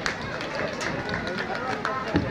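Crowd of many people talking at once in a steady background murmur, with no single voice standing out, and a sharp click at the start.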